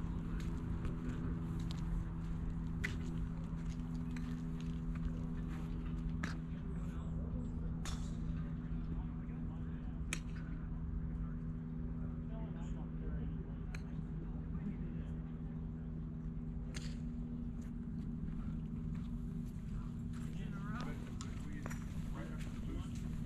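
Golf clubs striking balls on a driving range: about seven sharp cracks, a few seconds apart, over a steady low hum.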